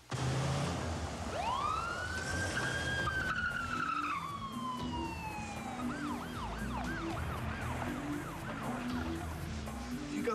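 Ambulance siren: a long wail that climbs, holds and slowly falls, then switches about six seconds in to a fast yelp sweeping up and down about three times a second.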